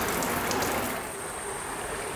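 Swimming-pool wall shower spraying water onto tiles: a steady hiss of falling water, with a faint thin high tone joining about a second in.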